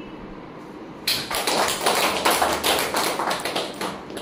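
A small group of people clapping their hands, starting suddenly about a second in and stopping near the end.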